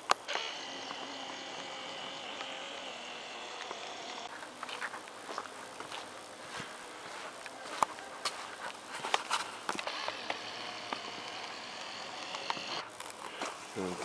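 A steady high insect chorus at the start and again near the end. In the middle, scattered irregular clicks and knocks of footsteps and handling of a hand-held camera.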